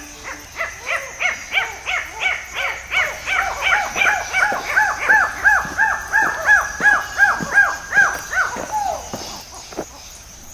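Birds calling in a long run of short rising-and-falling notes, about four a second, with two callers overlapping. The higher caller fades about halfway through and the lower one carries on until shortly before the end.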